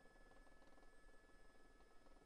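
Near silence: faint hiss with a thin, steady high tone.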